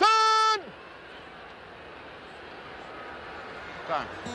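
A quarterback's single loud, drawn-out shouted snap-count call at the line of scrimmage, cut off after about half a second. It is followed by a steady low hum of stadium crowd noise.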